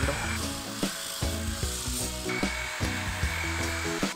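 Electric sander running on a varnished wooden tiller handle, a steady high whine that drops out for about two seconds in the middle and then resumes, under background music.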